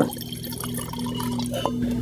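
Red wine pouring from a bottle into a wine glass, a steady trickle.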